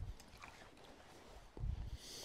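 Quiet room tone with a soft click at the start and a brief low thump near the end, from someone moving about the room.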